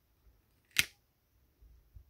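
A single sharp click a little under a second in, with a short tail, against a quiet room.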